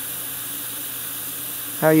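Dental high-speed suction running with a steady, even hiss. A voice starts near the end.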